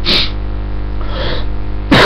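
A man coughs, with a short sharp breath at the start and a loud burst of coughing breaking out right at the end, over a steady low electrical hum.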